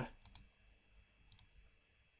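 Faint computer mouse clicks: a quick double click about a third of a second in and another at about one and a third seconds.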